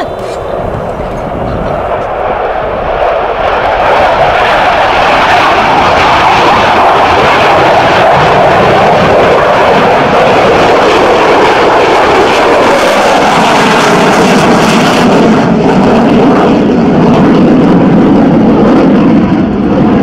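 An F-16V fighter's jet engine on a low approach. The roar swells over the first few seconds to a very loud, steady roar, and about two-thirds of the way through it drops into a deeper rumble as the jet turns past and away.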